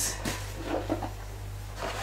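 Hands kneading shortcrust dough in a bowl: faint soft knocks and rubbing over a steady low hum.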